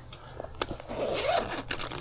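Handling noise from the solar bag: hands sliding over and shifting the fabric panels and cables, a soft rustling and scraping with a few light clicks.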